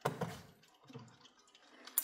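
A small metal alarm clock being set down on a wooden shelf: a knock at the start that fades quickly, then a softer bump about a second in.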